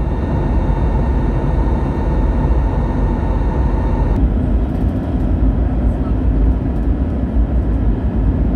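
Airliner cabin noise in flight: a loud, steady rumble of engines and airflow, with faint steady tones above it that shift about four seconds in.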